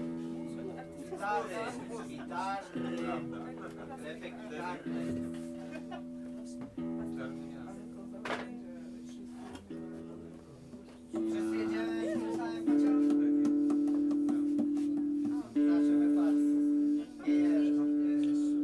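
Electric guitar being tuned: strings plucked and left to ring as steady notes, struck again every two or three seconds. The notes become much louder about halfway through. Quiet talking can be heard under them in the first few seconds.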